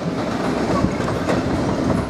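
Class 66 diesel-electric locomotive approaching at low speed: a steady rumble of its two-stroke diesel engine running, with the wheels rolling over the track.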